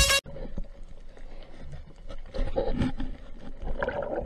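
Electronic music cuts off just after the start, giving way to underwater sound picked up by a diving camera: a low rumbling water noise with scattered faint clicks and crackles.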